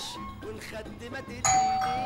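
A doorbell chimes once about one and a half seconds in: a sudden bright strike on a single steady tone that fades slowly, over soft background music.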